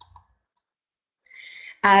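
Two quick computer mouse clicks about a fifth of a second apart, as the presentation slide advances. A short faint hiss follows, and a woman starts speaking near the end.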